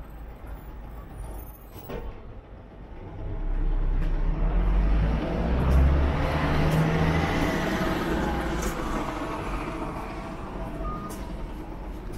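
A bus passing close by on a city street: its engine rumble and road noise swell about three seconds in, peak around the middle and then fade away.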